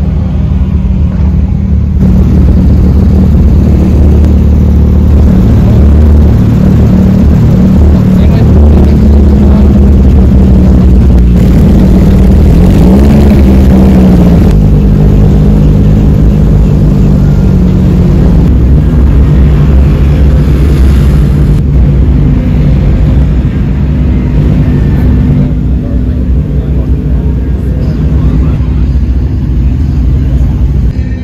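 A car engine running nearby at a steady speed, with a brief rise and fall in revs about 13 seconds in, over the chatter of people.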